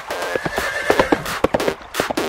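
A horse whinnying over an electronic dance track with a steady beat.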